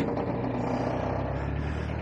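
Narrowboat engine running steadily in reverse, a low hum whose note changes about one and a half seconds in.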